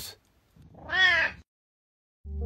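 A single cat meow, about a second long, rising and then falling in pitch.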